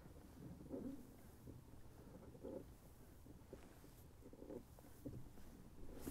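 Near silence, with a few faint, brief low sounds.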